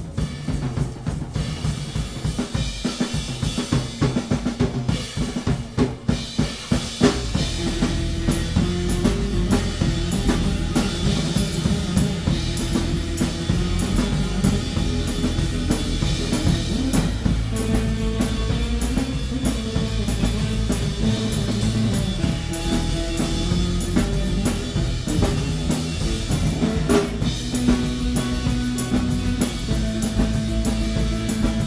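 A live rock 'n' roll band: the drum kit plays a busy pattern on kick, snare and rims, and about seven seconds in the bass guitar and electric guitar join for the rest of the passage.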